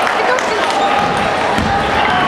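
Table tennis ball clicking off the table and bats as a serve is played and returned, over steady chatter of many voices in a large sports hall.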